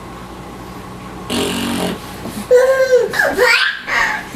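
Children laughing: a short breathy burst about a second in, then high-pitched squealing laughter with gliding pitch through the second half.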